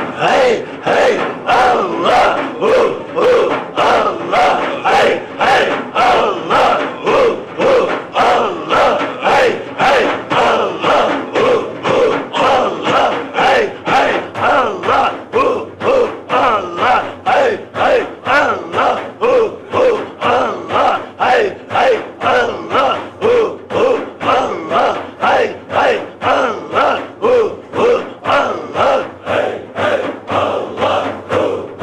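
A large group of men chanting dhikr in unison in a fast, steady pulse of about one and a half beats a second, with frame drums (daf) struck on the beat.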